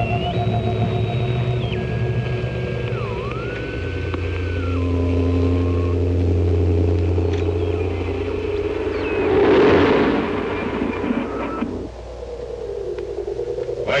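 Electronic science-fiction sound effects from a 1950s film soundtrack: steady oscillator tones that step and slide up and down in pitch over a low, steady hum. A hissing swell rises and fades about ten seconds in.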